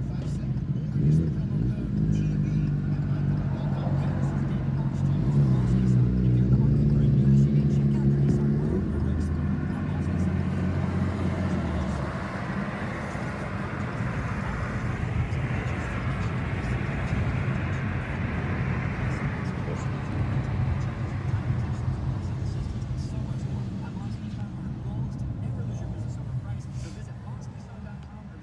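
Car running in traffic, heard from inside the cabin: a steady low engine hum that shifts in pitch over the first twelve seconds, then a rising wash of tyre and road noise as the car drives on.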